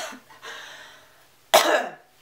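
A woman coughing once, sharply, about a second and a half in, after a faint breathy exhale.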